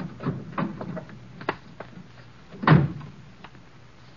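A car door sound effect from a radio play: a few short latch and handling clicks as the door opens, then the door slammed shut with a heavy thump nearly three seconds in.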